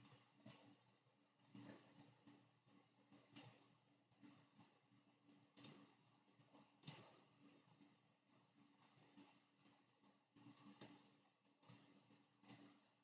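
Near silence broken by faint, irregular clicks, about eight of them a second or two apart, over a low steady hum.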